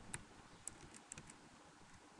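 Faint computer keyboard keystrokes: several separate taps, with a quick cluster of them around the middle, as text in a form field is deleted and typed.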